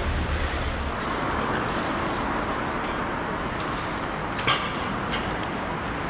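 Steady city street traffic noise at night, with the low rumble of a vehicle fading out in the first half second. A single sharp click comes about four and a half seconds in.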